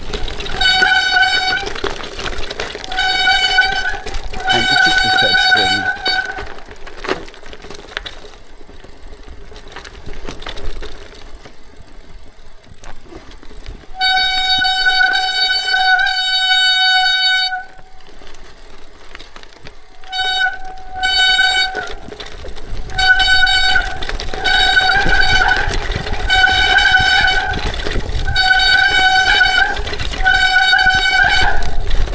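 Bicycle brakes squealing under braking down a steep loose-gravel descent: repeated bursts of one steady high-pitched squeal, most about a second long and one held for over three seconds midway. Tyres rumble over the stones underneath.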